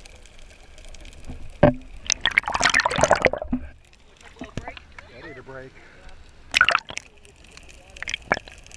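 Water sloshing and splashing around a waterproof action camera as it breaks the surface about two seconds in, then a second short splash near the end as it dips back under, over a muffled underwater wash.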